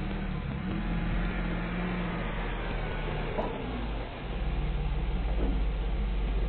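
Delivery van engine running as the van pulls up and stops; about four seconds in the sound settles into a steady, slightly louder low throb as it idles close by.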